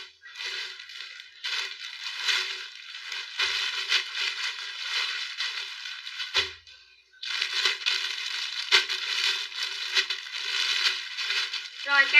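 Plastic garment bags and folded clothes rustling and crinkling in irregular bursts as a pile is rummaged through, with a brief pause about six and a half seconds in.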